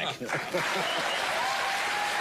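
Studio audience applauding, the applause swelling in just after a man's voice trails off at the start and holding steady.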